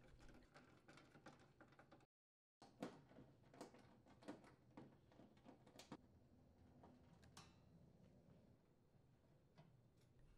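Near silence broken by scattered faint clicks from about three to seven and a half seconds in: a screwdriver turning out screws from the sheet-metal frame of an electric range top.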